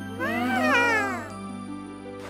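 A cartoon baby character's high, drawn-out 'ooh' of wonder, rising and then falling in pitch for about a second, over gentle background music.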